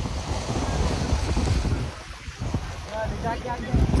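Wind buffeting the microphone over the wash of the sea, with faint voices of people around near the end.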